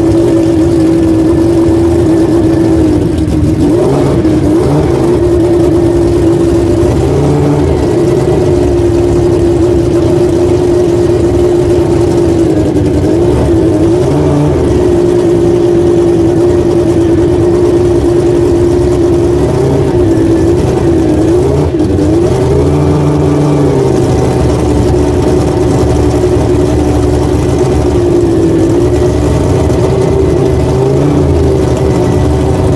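A McLaren-Honda Formula One car's engine idling loudly at a steady pitch. The throttle is blipped briefly a few times, making short rises and falls in the engine note.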